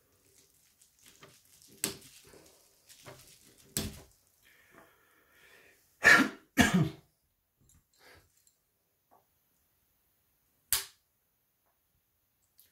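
Sharp plastic clicks and faint scraping as the lower plastic cover of a Samsung Galaxy A-series phone is pried off, with two coughs just past the middle and one more sharp click near the end.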